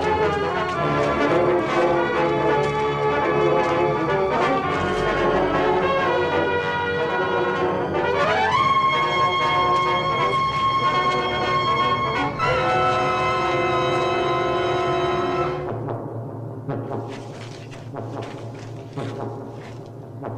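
Film score music with loud held brass chords. About eight seconds in, a rising glide climbs to a high held note. Past the middle the music drops to a quieter, sparser passage.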